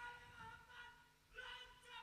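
Faint, drawn-out human voices, sung or chanted, with long held notes that slide down in pitch.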